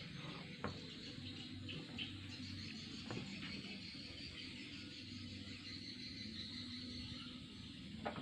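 Quiet outdoor ambience with faint, steady insect chirring and a few soft clicks.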